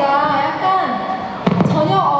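A young woman talking through a handheld stage microphone and PA, with a single sharp thump about one and a half seconds in.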